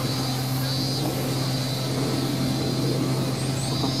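A steady, unchanging low hum over even background noise.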